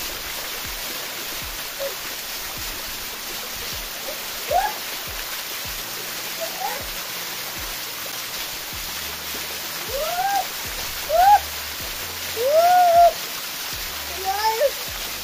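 Small waterfall pouring steadily onto rock and a shallow pool, splashing on the bathers standing in it. Short rising-and-falling "ooh"-like exclamations from a person in the water break in once about four and a half seconds in and several times near the end.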